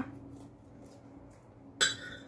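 A steel kitchen knife clinks against a ceramic cake plate near the end, leaving a short ringing tone over a faint steady hum.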